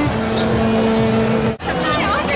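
A steady pitched tone held for about a second and a half, then cut off abruptly, over the chatter of a crowd.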